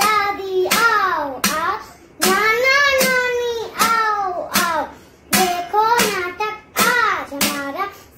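A young girl chanting a sung slogan in short lines of about a second each, each line opening with a sharp slap on a steel plate.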